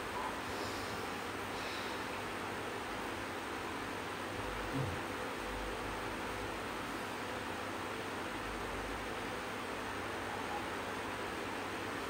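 Steady whooshing hiss of an electric fan running, with one soft low thud about five seconds in.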